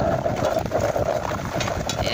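Footsteps and dog paws on a gravel road, a steady run of irregular crunches.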